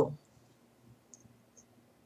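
Near quiet, with two faint small clicks about a second and a second and a half in, as a hand tips a small glass jar of coarse salt.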